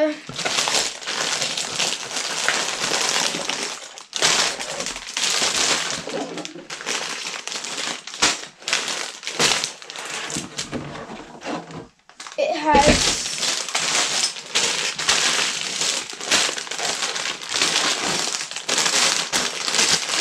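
Sealed plastic bags of Lego pieces crinkling and rustling as they are pulled from the box and handled, with short pauses near four and twelve seconds in and a brief thump about thirteen seconds in.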